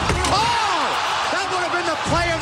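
Basketball sneakers squeaking on a hardwood court during play, several squeaks that rise and fall in pitch and overlap, over a steady crowd noise.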